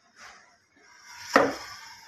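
A single sharp knock, with a short ringing tail, about one and a half seconds in, over faint rustling.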